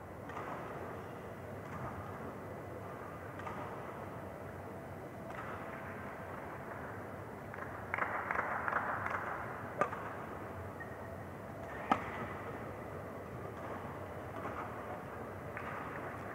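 Badminton rally: sharp racket strikes on the shuttlecock, the two loudest about ten and twelve seconds in, with fainter hits between, over the steady background noise of the hall.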